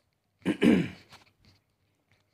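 A man clearing his throat once, a short ahem about half a second in.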